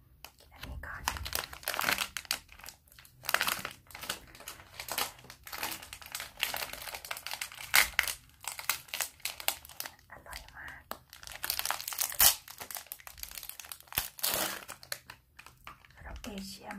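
Plastic ice cream bar wrapper being crinkled and torn open by hand, a dense run of crackles in clusters with short pauses.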